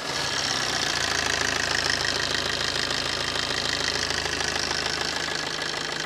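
Suzuki Swift VDi's 1.3-litre DDiS four-cylinder diesel engine coming in just after a start and then idling steadily, heard from the open bonnet.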